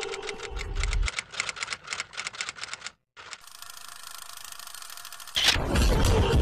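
Typewriter keystroke sound effect, an irregular clatter of clicks for about three seconds. After a brief break comes a fast, even mechanical rattle, cut off a little after five seconds by a sudden loud whoosh and bass hit.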